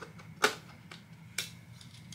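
Sony 16-35mm f/4 zoom lens being fitted and twisted onto the E-mount of a Sony a7C body: a few sharp clicks of the bayonet mount, the loudest about half a second in and another near one and a half seconds.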